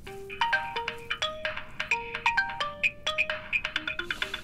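Light, bouncy background music: a quick melody of short, bright, sharply struck notes that starts suddenly and keeps a lively rhythm.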